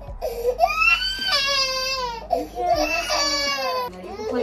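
Nine-month-old baby crying: two long wailing cries, each about a second and a half, the first rising in pitch and then falling away.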